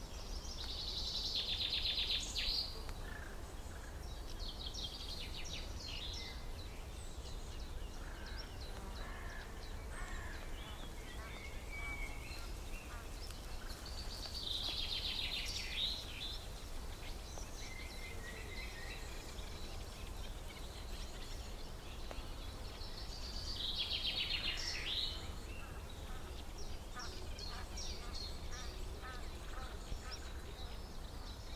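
Songbirds singing: a rapid, high trilling phrase comes back about every ten seconds, with softer chirps between, over a steady low rumble.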